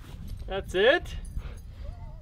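Two short, high-pitched voice-like cries rising in pitch, about half a second in and again just before a second, followed near the end by a faint wavering tone.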